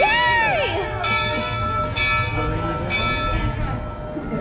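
Steam locomotive's brass bell being rung, struck about once a second so that its tone rings on steadily.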